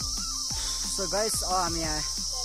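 A steady high-pitched insect drone carries on throughout, under background music with a regular deep beat about twice a second. A short stretch of voice comes in about a second in.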